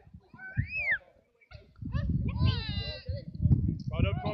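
Wordless shouts of football players across the pitch: a short high call that rises and falls about half a second in, then a longer drawn-out shout between two and three seconds in. Wind rumbles on the phone's microphone.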